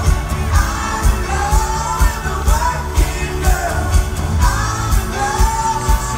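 Pop-rock band playing live, a singer's voice over a steady drum beat of about two strokes a second, heard from among the audience.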